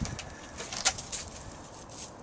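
A dog's paws scuffing on a wooden doghouse roof and dry leaves as she jumps down, a run of short rustling clicks with the loudest a little under a second in.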